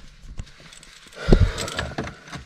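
A few light clicks and a short knock about a second and a half in, heard in a quiet car cabin with the engine not running.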